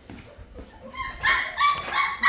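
Nineteen-day-old Great Bernese puppies (Great Pyrenees × Bernese Mountain Dog) whining in high-pitched cries that start about a second in, hungry puppies wanting to nurse.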